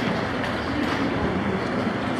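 Steady, fairly loud room noise of a hall with a PA system: an even rush with no distinct events.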